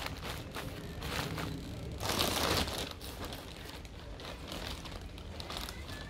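Plastic bags crinkling and rustling as hands work compost into a heavy-duty plastic bag, with the soft crumbling of the compost. The loudest stretch is a burst of crinkling about two seconds in.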